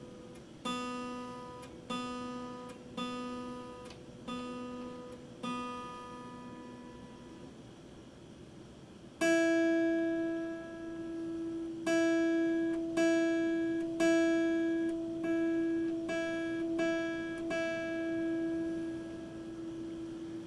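Epiphone acoustic guitar being tuned: one string plucked five times, about a second apart, then after a short pause a higher string plucked about eight times, each note left to ring.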